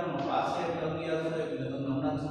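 A man's voice speaking in a slow, drawn-out, sing-song way, like figures being recited aloud while they are written.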